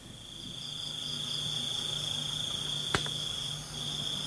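Crickets trilling steadily at a high pitch over a low hum, pausing briefly near the end; a single sharp click about three seconds in.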